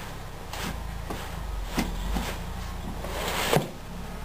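Hydraulic clutch pedal being pressed down by hand through its free play. The pedal and its linkage give a few faint clicks and knocks over a steady low hum.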